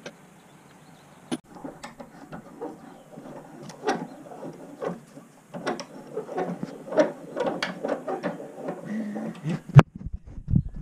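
Metal tools and scrap parts clinking and clattering as they are handled on a workbench: a run of irregular knocks and rattles, with one sharp, louder knock near the end.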